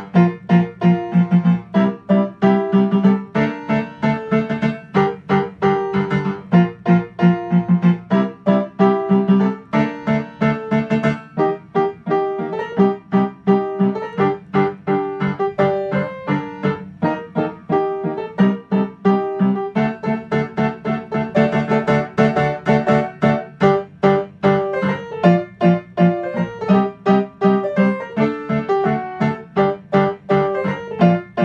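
Piano played with both hands, a steady, even stream of notes with a repeated lower part under a melody.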